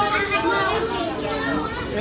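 Several people talking and calling out over one another, with no other distinct sound standing out.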